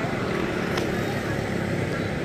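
Steady low outdoor background rumble with faint voices underneath, and a single light click a little under a second in.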